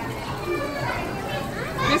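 Busy background of children's voices and chatter in a crowded play space, with a louder voice starting to speak right at the end.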